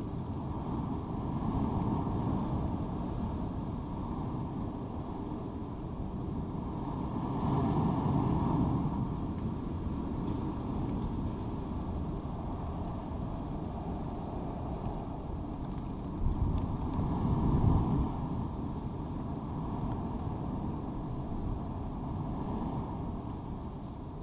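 Steady low outdoor background rumble with no clear single source, swelling about a third of the way in and again, with a few sharp low thumps, about two-thirds of the way in.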